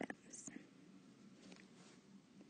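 Near silence: faint room tone, with the tail of a spoken word right at the start and a brief soft hiss about half a second in.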